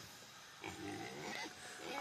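A faint, short animal call starting a little over half a second in and lasting about a second, with quiet on either side.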